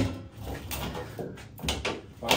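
Light knocks and rattles, a few times, from an old wall-mounted water heater tank being rocked by hand. The tank is stuck on its wall hooks and won't unhook.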